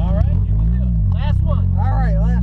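Mazda Miata's four-cylinder engine running at low revs, heard from inside the car, its note rising and falling once as the car pulls away, with voices talking over it.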